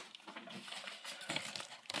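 Faint rustling and light handling noises from packaging being moved about on a table, with a couple of small taps late on.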